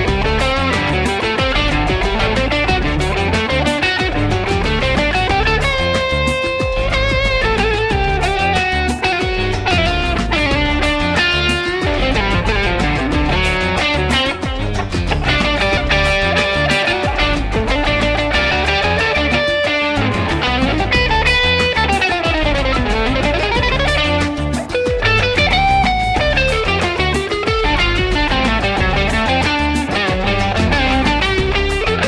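Electric guitar, played with a pick, improvising a solo over a bass-heavy backing groove. The lines move between bluesy, jazzy phrases and raga phrases ornamented with held notes and sliding pitch bends, with a run of slides a little past the middle.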